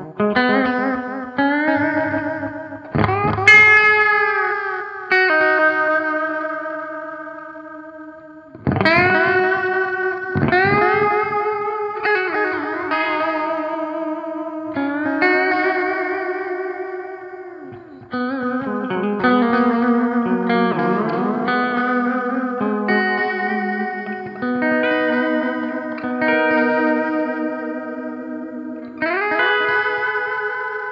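Electric guitar played through a NUX Reissue Series Analog Delay pedal: single notes and chords, some bent upward, each left to ring and fade with the delay's repeats behind them.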